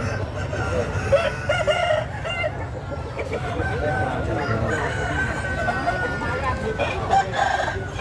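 A game-fowl rooster crowing, one long drawn-out crow through the middle, over the chatter of a crowd.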